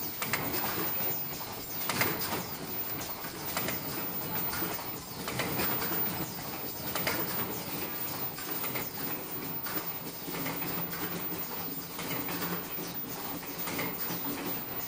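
Automatic flat earloop face mask production line running: a steady mechanical clatter with repeated short clacks as the machines cycle.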